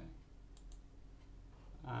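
Faint computer mouse clicks: a quick double click about half a second in, over a low steady hum.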